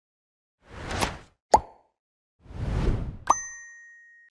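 Animated-logo sound effects: a short whoosh, a sharp plop, a second whoosh, then another plop that rings on as a high bell-like ding and fades.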